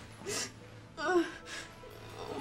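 A woman sobbing: a sharp gasping breath in, then a short, shaky, wavering sob about a second in (the loudest moment), and another gasping breath just after. Quiet music plays underneath.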